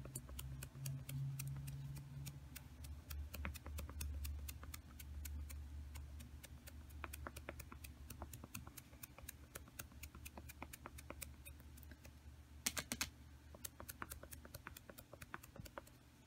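Foam makeup sponge dabbed repeatedly with black acrylic paint onto a vinyl stencil on a painted wooden board: a run of light taps, about four or five a second, a couple of them louder near the end, over a faint steady low hum.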